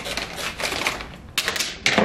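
Clear plastic bag of peanuts being opened and handled: crinkling plastic and peanuts rattling inside it, a rapid irregular run of clicks that is loudest about a second and a half in.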